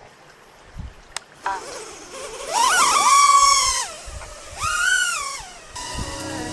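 Small FPV quadcopter's motors whining. The pitch rises as the throttle is pushed, holds for about a second, then falls away, and a shorter second rise and fall follows near the end.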